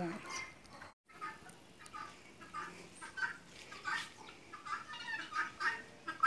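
Farmyard poultry calling in short, repeated calls after a brief dropout in the sound about a second in.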